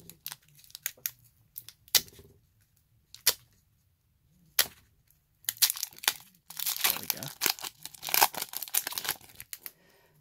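Foil wrapper of a Pokémon booster pack being crinkled and torn open by hand: scattered crackles at first, then a long run of tearing and crinkling from about halfway in.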